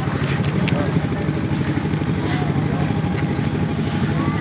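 An engine running steadily with an even low throb, under the chatter of a group of people.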